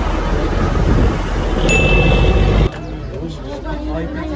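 Wind rumbling on the microphone over boat and water noise out on the water, with a high steady beep lasting about a second, then an abrupt switch near the end to a crowd chattering.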